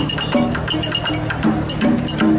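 Music: a quick run of sharp clicks and knocks over short, low melodic notes.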